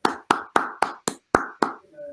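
One person clapping hands, about seven crisp claps at roughly four a second, thanking the seminar speaker.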